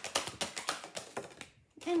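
A deck of oracle cards being shuffled by hand: a quick run of soft card slaps and flicks, about seven a second, stopping about a second and a half in.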